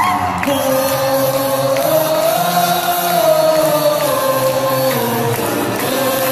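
Live K-pop concert music in a large arena: a long held sung melody that slowly rises and falls over the band, with crowd voices singing along.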